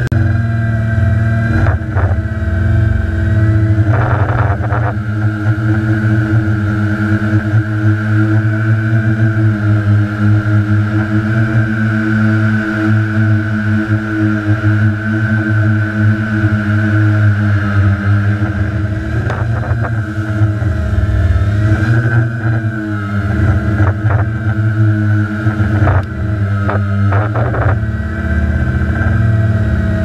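Quadcopter's electric motors and propellers heard from the onboard camera: a loud, steady multi-tone whine. Its pitch dips and rises several times in the second half as the throttle changes.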